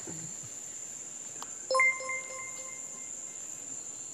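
Crickets trill steadily throughout. About two seconds in, a short electronic chime sounds twice in quick succession and fades away over about a second.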